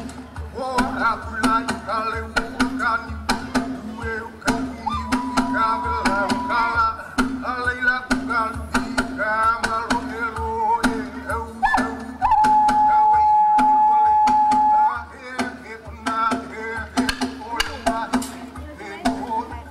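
Singing with sharp percussion strikes accompanying a dance. Two long held notes stand out, the second and louder lasting about three seconds past the middle.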